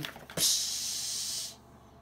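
A short click, then a steady high-pitched hiss lasting about a second that cuts off fairly sharply.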